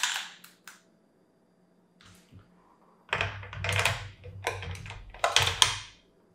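Metal clicks, clunks and sliding rasps of an Accuracy International AX rifle bolt being put back together and handled. There is a sharp click at the start, then a run of clunks and scrapes over the last three seconds as the bolt is worked back into the action.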